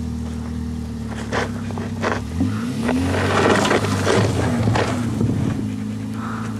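An engine running steadily, revving up and then back down in the middle, with snow scraping and crunching under a sled at the same time.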